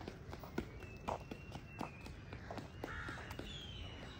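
Soft footsteps walking on a paved path, with a faint thin high whistle in the background.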